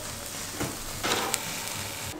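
An omelette with tomatoes sizzling in a frying pan, with a few sharp pops through the steady hiss.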